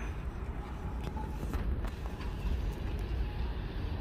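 Steady low rumble of street traffic, with a few faint clicks over it.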